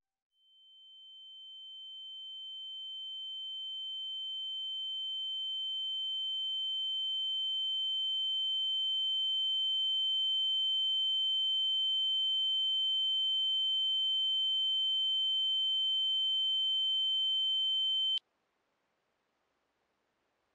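A steady, high-pitched electronic ringing tone, the ear-ringing effect used in film sound design for the daze after an injury. It swells up from nothing over about ten seconds, holds steady, then cuts off abruptly shortly before the end.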